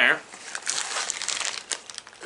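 Rustling and crinkling of items being dug out of a hunting day pack's side pocket: a dense run of small crackles.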